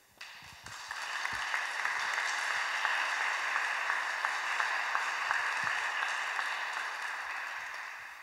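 Audience applauding, swelling over the first second and then slowly dying away.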